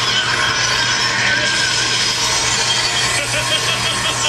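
Anime battle sound effects: a loud, steady, harsh rushing and grinding energy noise as a fighter powers up, with a fast, even pulsing near the end.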